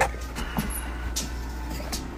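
Steady low hum of room noise with a few soft clicks and rustles as a handheld phone is swung around.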